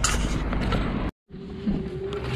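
Lorry cab noise as the truck is driven slowly up to its parking spot: a low engine rumble with hiss, which cuts off abruptly about a second in. After a brief silence comes a quieter cab with a steady faint hum.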